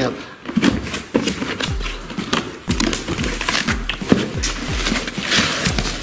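A cardboard box being opened by hand: irregular rustling, scraping and crinkling of cardboard and plastic wrap, with a longer rustle near the end. A soft beat of background music runs underneath.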